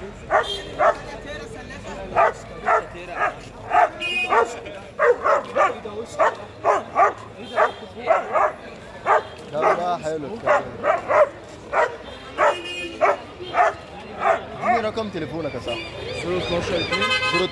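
A dog barking over and over, about two barks a second with brief pauses, a few of them sharper and higher.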